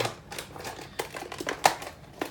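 Handling noise: a quick, irregular run of light clicks and taps, the loudest about a second and a half in.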